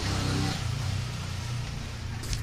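Steady low hum of a motor vehicle engine idling.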